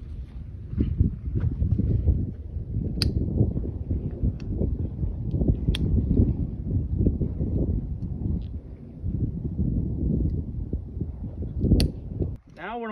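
Gusty wind rumbling on the microphone, with rope being handled and three sharp metal clicks of carabiners: about three seconds in, about six seconds in, and just before the end.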